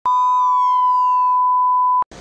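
Electronic logo-intro sound effect: a steady, high pure beep tone held throughout, with a second, richer tone gliding downward over it for about a second. Both stop abruptly at the end.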